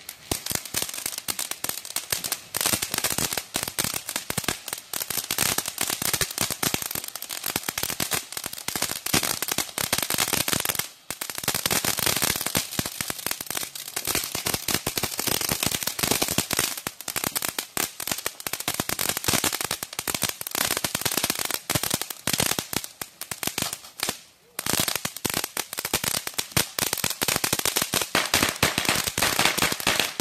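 Firework crackling: a dense, unbroken stream of rapid small pops, with brief lulls about 11 seconds in and again around 24 seconds.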